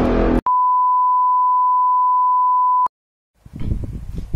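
Loud intro music cuts off abruptly, followed by a single steady electronic beep: one pure, unchanging tone held for about two and a half seconds. It stops dead and leaves complete silence, then faint room sound comes in near the end.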